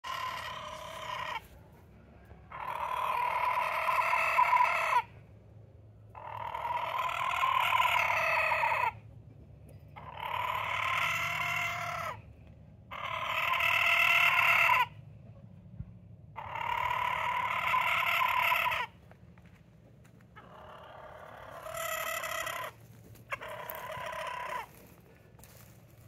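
Roosters crowing, about eight long crows one after another, each one to three seconds long with about a second between them.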